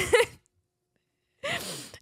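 A short breathy laugh right at the start, then about a second of silence, then a loud rush of breath, a laughing gasp, just before talking resumes.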